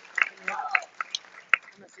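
A voice, with a string of sharp clicks scattered through it; the loudest click comes about one and a half seconds in.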